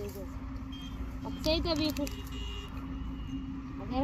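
A person's voice briefly, about one and a half seconds in, over a steady low hum and rumble.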